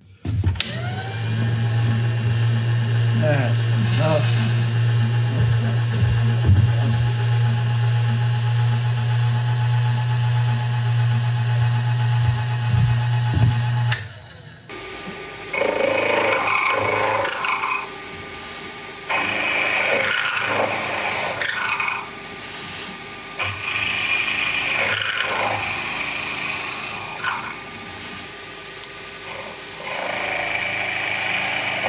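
Vertical milling machine spindle spinning up and then running with a steady hum. About halfway through the sound changes abruptly, and the cutter is fed into the workpiece three times, a few seconds of cutting noise each time.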